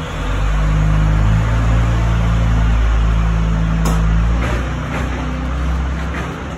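Loud, steady low rumble of a large motor vehicle's engine running on the street, with a faint click about four seconds in.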